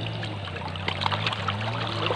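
Water trickling and splashing in small irregular bursts as hands and a mesh net bag are worked at the surface of shallow, muddy canal water, over a faint steady low hum.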